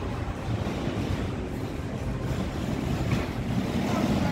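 Steady low rumble of wind buffeting a handheld phone microphone, over a hiss of city street ambience.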